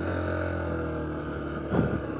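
Honda CG 150 Fan motorcycle's single-cylinder four-stroke engine running steadily at low revs.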